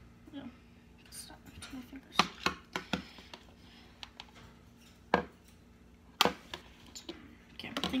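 A metal spoon scraping and knocking against a plastic bowl as excess slime is scraped off it: a few sharp clicks, three in quick succession about two seconds in, then two more a second apart.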